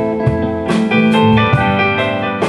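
Live blues-rock band playing an instrumental passage with no vocals: electric guitar, keyboard, bass and drums, with sustained notes and several cymbal strikes.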